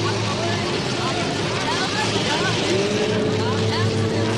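Film soundtrack of a war scene: a vehicle engine runs steadily under scattered voices. A long held tone rises in about three-quarters of the way through.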